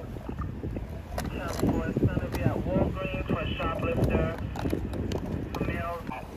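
Indistinct voices talking, over a steady low rumble of wind on the microphone, with a few sharp clicks.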